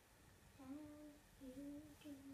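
A girl humming a tune faintly in two held notes, the first starting a little over half a second in and the second just before the end.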